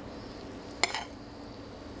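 A metal spoon clinks once against a frying pan, with a brief ringing, as creamy sauce is spooned out of the pan, over a steady low hiss.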